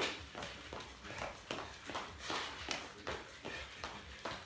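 Feet of two people running and jumping in place on a hardwood-style floor, a steady patter of footfalls about two or three a second.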